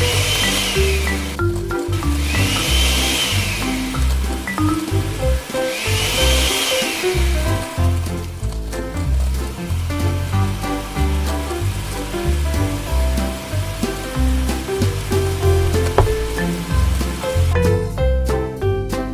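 A small electric blender runs in three short bursts in the first half, its motor whine rising and falling each time as it blends ice and watermelon, over background music.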